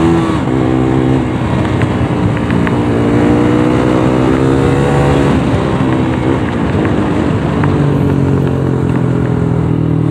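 Sport motorcycle engine under hard acceleration, its note rising in pitch, dropping at a gear change about five seconds in, then pulling again, with wind rush over the microphone.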